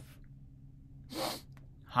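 A man's single sneeze, stifled into his fist, about a second in.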